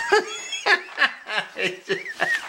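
People chuckling in short, broken bursts of laughter.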